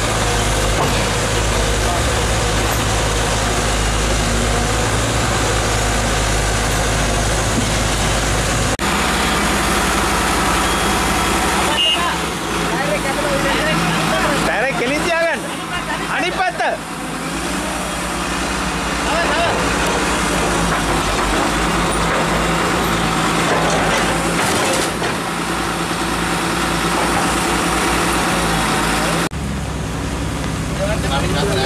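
Heavy diesel engines of a Cat 312B excavator and a loaded truck running hard while the truck is pushed through deep mud, with people's voices over them. A steady low engine hum changes about nine seconds in.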